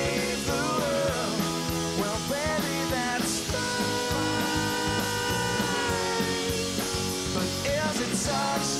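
Rock band playing live: drum kit, electric bass and electric guitars, with singing over the top and a cymbal crash about three seconds in.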